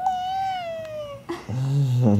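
A toddler imitating a cat's meow: one long, high-pitched "miau" lasting about a second, rising briefly and then sliding slowly down in pitch. A lower adult voice follows near the end.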